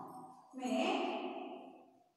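A person's voice holding one long, drawn-out vowel that starts about half a second in and fades away near the end.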